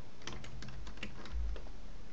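Computer keyboard keys pressed in a quick run of about six clicks in the first second and a half, with a dull low bump near the middle.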